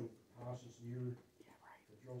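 Quiet, indistinct speech: two short spoken phrases with pauses between them.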